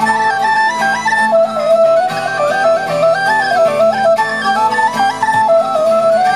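Live Celtic folk band playing a quick tune, with a tin whistle melody in fast stepwise notes over strummed acoustic guitar and low sustained accompaniment.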